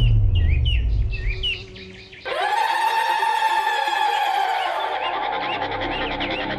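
Birds chirping in short repeated calls, then about two seconds in a sustained music chord, a dramatic background-score sting, swells in and holds before fading near the end, with faint chirps continuing beneath.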